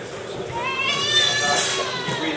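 A high-pitched drawn-out vocal cry from the crowd, starting about half a second in, rising in pitch and then holding for about a second and a half, over background chatter.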